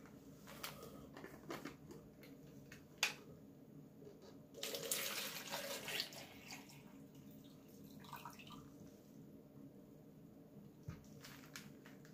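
Water being poured from a bottle into a clear plastic cup, splashing for about a second and a half, starting about four and a half seconds in. A single sharp click comes shortly before.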